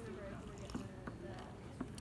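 Faint voices in the room, with a few soft clicks.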